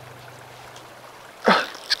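Faint, steady rush of flowing river water, with a short sharp vocal sound about one and a half seconds in, just before a voice starts speaking.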